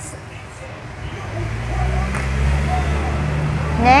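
A low, steady rumble that grows louder about a second in, with a faint light knock partway through.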